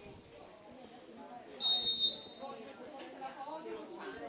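A referee's whistle: one short, shrill blast of about half a second, a little before the middle. Faint voices call out in the background.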